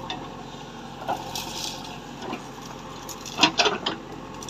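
JCB 3DX backhoe's diesel engine running steadily as its bucket tears out and drops a dry thorny shrub: dry branches crackle and snap, with a burst of loud cracks about three and a half seconds in.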